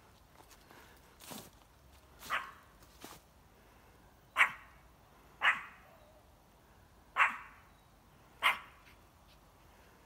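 Spitz dog barking in single, spaced barks: three fainter ones in the first three seconds, then four louder ones about a second or more apart.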